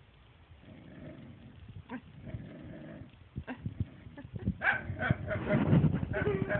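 Jealous dog growling and grumbling in a 'talking' way, low and quiet at first, then louder and higher toward the end.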